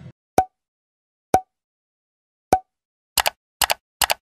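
Editing sound effects for an animated subscribe end card: three short pops about a second apart, each with a brief tone, then two sharp double clicks near the end, with dead silence between them.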